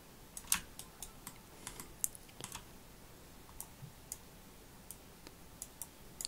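Computer keyboard and mouse clicking in short, irregular clicks, with a few louder ones in the first couple of seconds.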